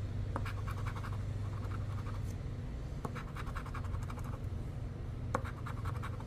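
A poker-chip-style scratcher scraping the coating off a scratch-off lottery ticket, in several runs of quick short strokes with brief pauses between them. A steady low hum runs underneath.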